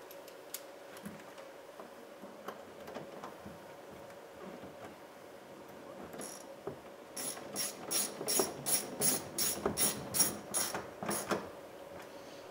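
Hand ratchet with an extension socket driving a door-panel screw into plastic. A few faint handling ticks come first. Then, about six seconds in, a run of sharp, evenly spaced ratchet clicks starts, about three a second, and stops shortly before the end.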